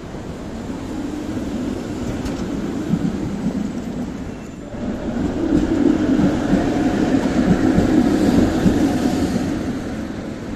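Trams rolling past close by on street rails: a rumble of wheels on track that dips briefly about halfway, then comes back louder with a steady whine, fading near the end as the last car clears.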